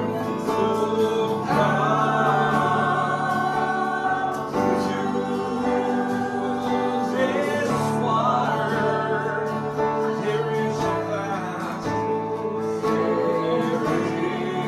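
A small group singing a gospel worship song together, accompanied by an acoustic guitar, with long held sung notes.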